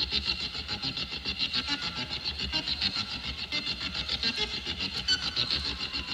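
Rock keyboard solo in a harsh, noise-like passage: a rapidly pulsing, distorted electric keyboard texture with no clear melody.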